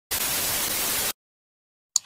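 Burst of TV-static white noise, a glitch sound effect lasting about a second and cutting off suddenly, then silence and a sharp mouse-click sound effect at the very end.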